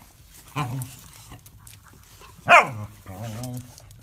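A small dog gives one sharp bark that drops quickly in pitch, about two and a half seconds in.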